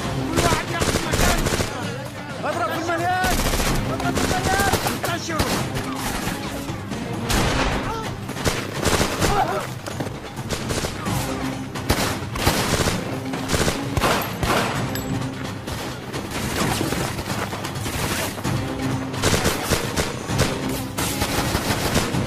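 A film gunfight: dense, rapid gunfire, much of it in machine-gun-like bursts, over an action music score.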